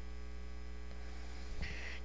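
Steady electrical mains hum, a low buzz with evenly spaced overtones, and a brief soft hiss near the end.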